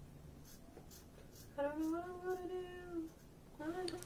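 A woman singing softly to herself: one long held note lasting about a second and a half, starting a little after the first second, then a short note just before the end.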